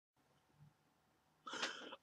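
Near silence, then about one and a half seconds in, a short, sharp intake of breath by a person just before speaking.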